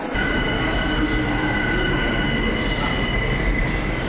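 New York City subway train running through a station: a steady low rumble under a held, high squeal of several tones, the highest of which stops near the end.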